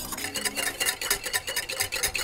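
Wire whisk beating olive oil and pickle marinade into a vinaigrette in a bowl: quick, even strokes, several a second, the wires clicking against the bowl.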